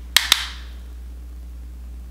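Two sharp clicks a fraction of a second apart, with a short ring after them: a small hard object knocking or snapping shut.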